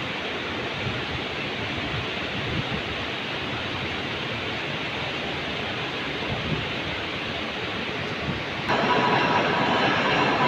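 Steady rushing background noise with a low rumble and no speech. Near the end it steps up abruptly and a faint steady whine joins in.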